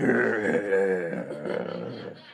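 A man's drawn-out growl through bared teeth, acting out gnashing teeth, fading out near the end.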